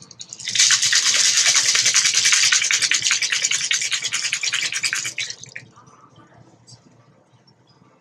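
Ice rattling inside a cocktail shaker being shaken hard, a fast, even rattle that stops about five and a half seconds in.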